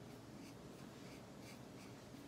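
A water-based felt-tip marker nib scratching faintly on paper in short back-and-forth colouring strokes, about three a second.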